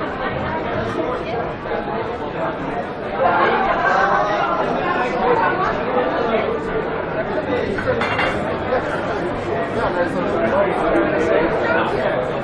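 Chatter of many people talking at once among passers-by and crowded outdoor bar tables, growing louder about three seconds in.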